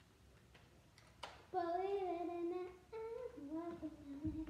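A child humming two held, slightly wavering notes, after a single sharp click about a second in.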